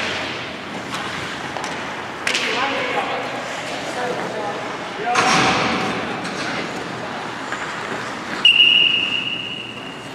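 Ice hockey play in a rink: players' voices and noisy scrapes of skates on the ice, then about eight and a half seconds in, a whistle blows one steady, high blast lasting about a second and a half, stopping play.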